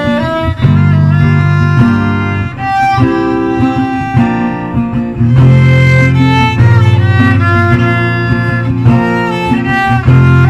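Bowed violin playing the melody in held notes over an accompaniment with steady low bass notes.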